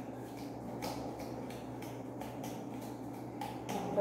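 Light, irregular clicks and rustles from fingers and a plastic comb working through long hair, over a steady low room hum.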